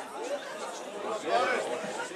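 Several people's voices talking and calling out over one another, with no clear words, one voice rising louder about one and a half seconds in.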